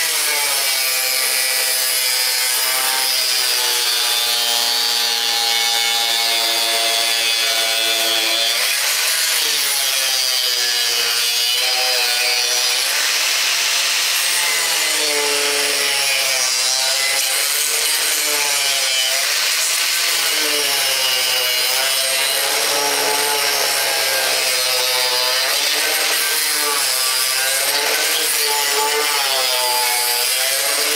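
Corded angle grinder running with its disc against wooden pallet boards, grinding the wood. It runs continuously, its motor pitch sagging and recovering again and again as the disc bites into the wood.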